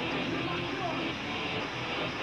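Hardcore band playing live at full volume, with distorted electric guitars and shouted vocals blurred into one dense, unbroken wash of sound.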